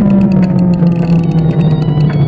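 A sustained electronic tone sliding slowly down in pitch, with a rapid faint ticking over it: a synthesized computer-processing sound effect.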